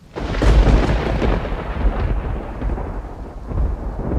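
A loud thunderclap that breaks suddenly and rolls on as a deep rumble, swelling again near the end as it slowly fades.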